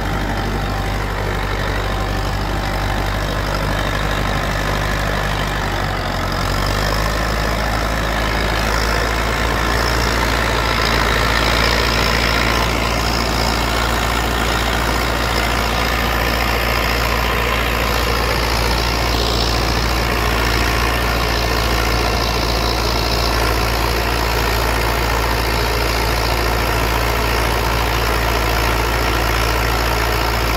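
IMT 577 DV tractor's diesel engine running steadily under load as it pulls a three-shank subsoiler through the soil; its note changes about six seconds in.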